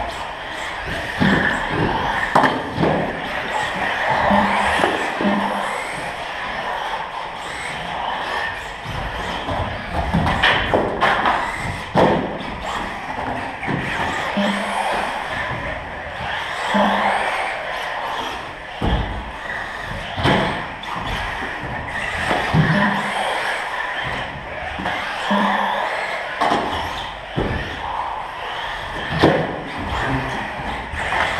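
Radio-controlled cars racing on a carpet track, a steady running noise broken by repeated sharp thumps and clatters as the cars land off the wooden jumps and hit the track edges, echoing in a large hall.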